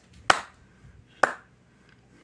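Two sharp clicks, about a second apart.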